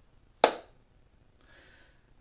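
A single sharp smack of a hand strike about half a second in, dying away quickly.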